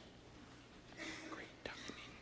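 Faint, low speech too quiet to make out, over a steady low hum, with two small clicks near the end.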